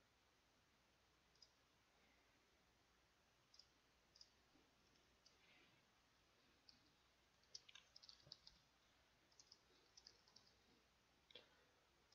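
Faint computer keyboard keystrokes and mouse clicks against near silence: a few scattered clicks at first, then quicker runs of typing around the middle and later.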